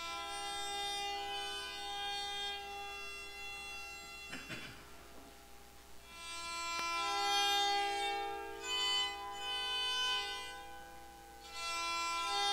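Hammered dulcimer played solo: a melody of struck notes that ring on and overlap. The playing dips about four seconds in, with a brief soft noise, then comes back louder.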